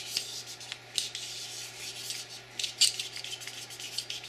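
Cleaning rod pushing a tight, oversized paper-towel patch through a .45 ACP pistol barrel, giving irregular rubbing and scraping strokes about a second apart as the patch drags against the bore.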